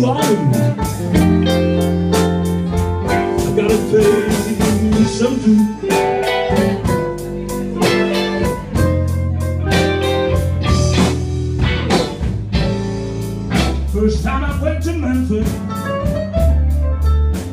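A live blues band playing an instrumental passage between sung lines: electric guitars over low bass notes and a steady beat.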